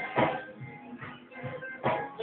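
Live gospel church band playing: held keyboard chords over a steady drum beat, with a strike about every second.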